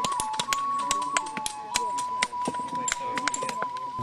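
Flint knapping: stone and antler tools striking flint, making many sharp, irregular clicks, several a second. A steady high tone runs underneath.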